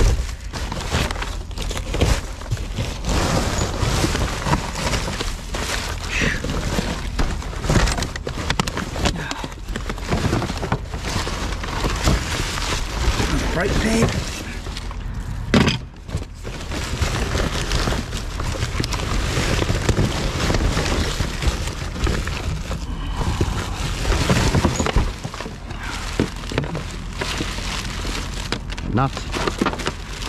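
Rubbish being rummaged through by a gloved hand in a dumpster: plastic bags and wrapping crinkling and rustling, cardboard boxes and bottles shifting, with frequent short knocks.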